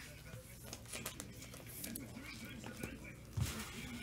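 Faint handling noise of trading cards and their wrappers on a tabletop: light scattered clicks and rustles, with a soft thump about three and a half seconds in.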